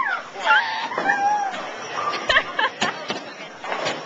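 High-pitched wordless voice squeals in the first second and a half, then a few sharp knocks amid the bowling-alley din.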